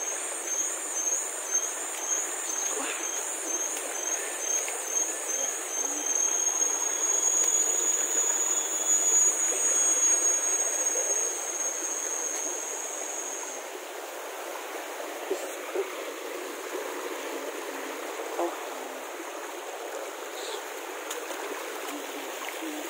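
Steady rushing of stream water along a forest trail. Over it a high-pitched whine pulses for the first few seconds, then holds steady and stops a little past halfway.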